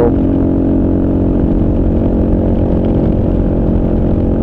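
Kawasaki KLR's single-cylinder engine running steadily at highway speed under load, pulling up a gentle grade.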